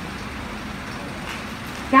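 A short pause in a speech: steady background noise with no distinct events, before a woman's voice over the PA returns near the end.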